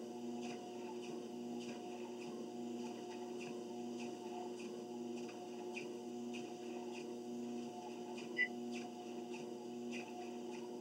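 Treadmill running with a steady motor hum, and faint regular footfalls on the belt about twice a second.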